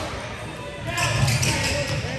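Basketball dribbled on a hardwood gym floor, with the voices of players and spectators mixed in; the voices get louder about a second in.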